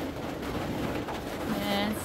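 Mostly quiet room sound, then near the end one short hum-like voice sound held at a steady pitch.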